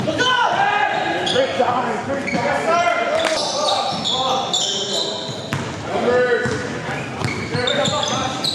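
Indoor basketball game in a gym: the ball bouncing on the hardwood floor among many short squeaks, with players' voices echoing around the hall.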